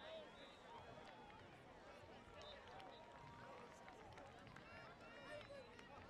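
Faint, distant crowd chatter: many overlapping voices calling and talking at once, with no single voice standing out.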